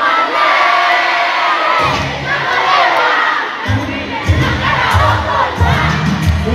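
Concert crowd cheering and shouting over the music. A heavy bass beat comes in about two seconds in and returns stronger partway through.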